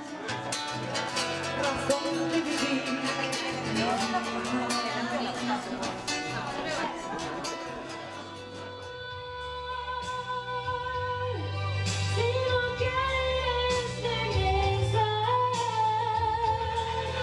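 Live acoustic folk song: a guitar is strummed quickly for the first several seconds. From about halfway in, a woman's voice sings long, held melodic lines over the guitar.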